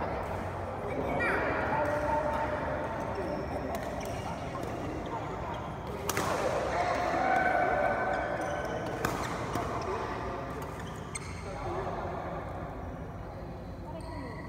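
Players' voices talking and calling, with sharp racket-on-shuttlecock hits of a badminton rally, the two clearest about three seconds apart in the middle.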